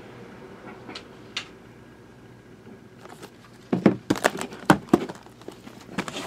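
Cardboard boxes of trading cards being handled on a table: two faint clicks, then from about four seconds in a quick run of sharp knocks and rustles as boxes are moved.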